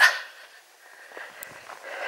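Faint footsteps on a dirt footpath, a few soft irregular thuds, under a soft steady hiss.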